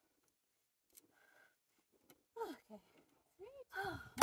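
Near silence for about two seconds, then a few short vocal exclamations with pitch sliding up and down, leading into cheering right at the end.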